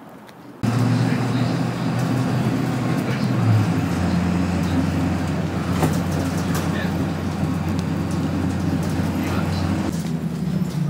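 School bus engine and road noise heard from inside the moving bus: a steady low drone with rattles, cutting in suddenly about half a second in.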